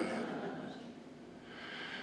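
A quiet pause in a man's talk into a headset microphone: faint room noise, with the trailing end of an 'uh' at the start and a soft breath near the end.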